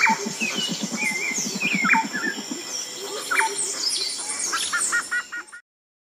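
Birds chirping and whistling in short, scattered calls over a steady, thin, high-pitched whine and a low, rapid pulsing. Near the end comes a quick run of four or five repeated notes, then the sound cuts off.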